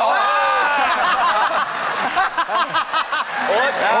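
Excited voices exclaiming and laughing in reaction to the play, with drawn-out, high-pitched vocal sounds rather than words.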